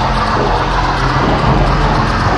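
Old-school acid and hardcore techno from a 1994 DJ mix, played from cassette: a dense, noisy, distorted stretch over a steady low bass.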